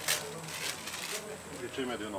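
Low, indistinct voices talking, with a short rustling hiss during the first second.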